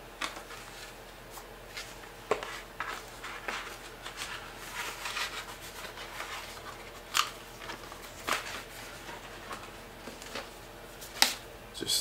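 Paper inserts and a booklet being handled and leafed through: soft, intermittent rustling of paper with scattered light clicks and taps.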